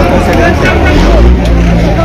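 Several people's voices, with a low rumble that grows stronger about halfway through.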